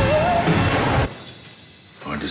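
A glass jar of pills shattering on a floor, over music with a singer's wavering held note. The music cuts off about a second in, leaving a much quieter stretch.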